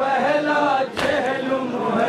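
A group of men chanting an Urdu noha, a Shia mourning lament, together, with one sharp slap about a second in.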